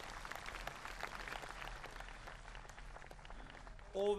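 Crowd applauding, a dense patter of many hands clapping, fairly faint.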